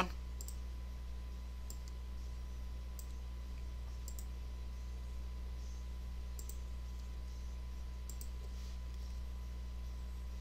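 About six faint, sharp clicks at irregular intervals, typical of a computer mouse being clicked while drawing, over a steady low electrical hum.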